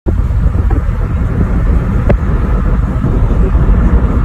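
Loud, steady low rumble of a car driving along a road, with a single sharp click about two seconds in.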